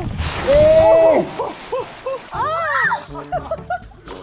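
A splash as a person drops through plastic cling film stretched over a swimming pool, with a long cry over it, then short vocal bursts and an excited exclamation.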